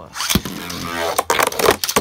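A Beyblade launcher rips, and two Beyblade Burst tops land in a plastic stadium. They spin and clash with rapid clattering hits, including a sharp knock just after the launch.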